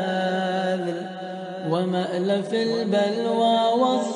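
A voice chanting Arabic devotional recitation in long, drawn-out melodic notes. It softens briefly about a second in, then rises into a new phrase.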